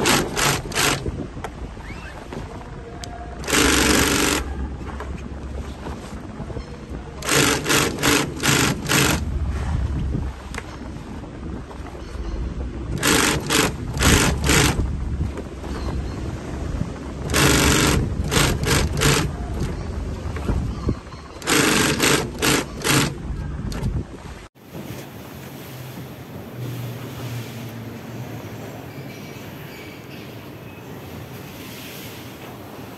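Industrial long-arm sewing machine stitching filter-press cloth in short stop-start runs of one to two seconds, six runs with pauses between, over a steady low motor hum. Near the end the stitching stops and only a quieter steady background remains.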